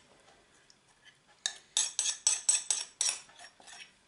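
A metal spoon clinking and scraping against glass as melted mozzarella is scraped from a glass cup into a glass bowl. After a quiet start it runs about four sharp clinks a second for roughly two seconds.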